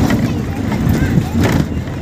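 A bus running along a rough road, heard from inside the cabin: a steady low engine and road rumble with a brief clatter near the start and another about one and a half seconds in. Passengers' voices can be heard in the background.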